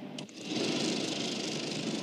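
A click, then a movie film projector running steadily from about half a second in.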